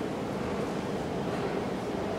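Steady background noise, an even rushing hiss with no distinct knocks or tones.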